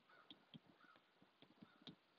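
Near silence with a few faint, scattered ticks of a stylus writing on a tablet screen.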